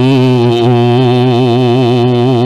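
A man's voice chanting one long held note into a microphone, the pitch wavering up and down in ornamentation without a break for breath.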